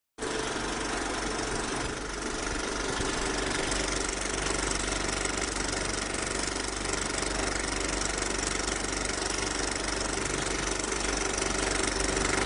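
Old film projector running: a steady mechanical whirring rattle over hiss.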